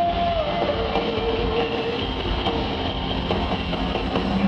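Live rock band playing loudly in an arena, heard from the audience: a dense, steady wall of band sound with one long held note that drops in pitch about half a second in and then holds.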